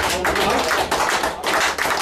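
Audience applauding: dense, irregular clapping from many hands.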